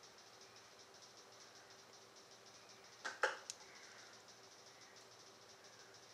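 Quiet room tone: a faint steady hum under a faint, evenly pulsing high chirr, broken once about three seconds in by a short soft noise.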